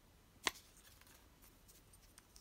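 One sharp click about half a second in, then a few faint ticks: small plastic figure parts being picked up and handled.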